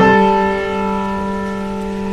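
Background piano music: one chord struck at the start and left to ring and slowly fade.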